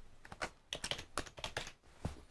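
Computer keyboard keys tapped in a quick, uneven run of clicks, typing a short word.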